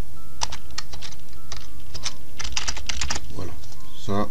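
Computer keyboard being typed on: irregular keystrokes, with a quick run of keys a little past two seconds in.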